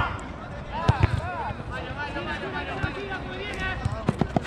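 Footballers' voices shouting and calling across the pitch, fainter than close speech, with a couple of sharp knocks about a second in.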